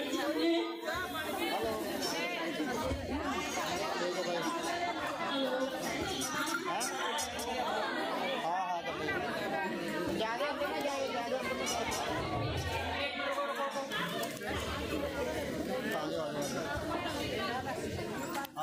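Crowd chatter: many voices talking over one another at once, with no single clear speaker.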